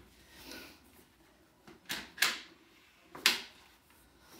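Bugaboo Fox stroller fittings clicking as a part is clipped off and back on: two quick sharp clicks about two seconds in, then a louder single click a second later.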